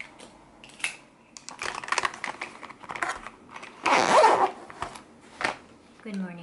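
Handling noises close to the microphone: a few sharp clicks, then irregular rustling and scraping, loudest about four seconds in, with a last sharp click near the end.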